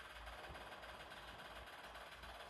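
Faint steady hiss of the gas burners on a Paloma IC-N86BHA-R stove, lit under lidded pots.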